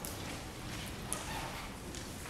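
Faint rustling of Bible pages being turned, with one brief soft click about a second in, over low room noise.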